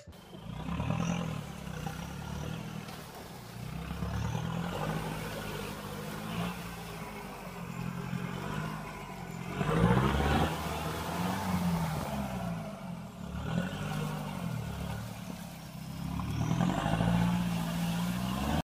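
Toy 1:12 4x4 RC crawler's electric drive motor and gearbox whining, its pitch rising and falling again and again as the throttle is worked. The crawler is climbing loose wood-chip mulch, and the sound is loudest and noisiest about ten seconds in.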